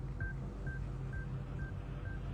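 A quiet electronic beep, about two short single-pitch beeps a second repeating evenly, over a low steady hum.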